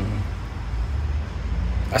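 A low rumble, stronger from about half a second in and easing near the end.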